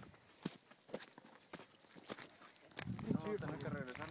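Faint footsteps of a hiker on a stony path: scattered crunches and clicks of shoes on loose rock. Faint voices talking join in about three seconds in.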